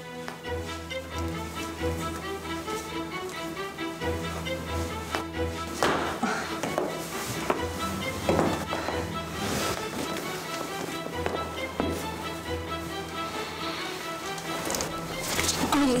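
Background music of held, slowly changing notes over a low sustained bass that drops out and returns a few times.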